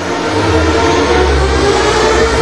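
Live R&B backing band playing an instrumental stretch: a held chord over a deep bass line, with no singing.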